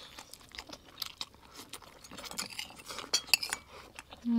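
Forks and spoons clinking and scraping on ceramic plates during a meal, a run of small scattered clicks and clinks with chewing between them.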